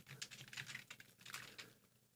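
Faint typing on a computer keyboard: a quick run of keystrokes that stops near the end.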